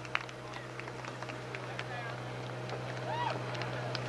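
Quiet outdoor field ambience: faint distant voices and scattered short clicks over a steady low hum.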